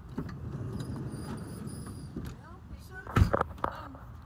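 Low rumbling handling and wind noise on a phone microphone, then a loud thump a little after three seconds in and a smaller one about half a second later.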